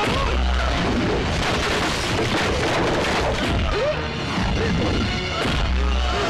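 Film fight-scene soundtrack: loud background music with dubbed punch and crash sound effects. Heavy low booms come just after the start and again near the end.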